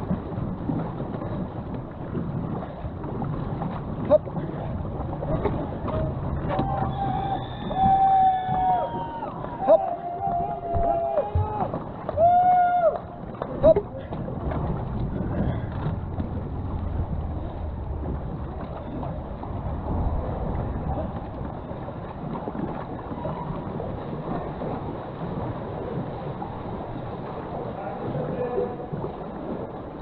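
Water rushing and splashing around a racing canoe as it is paddled down a river, with wind on the microphone and a few sharp knocks. For several seconds in the middle, people's voices call out.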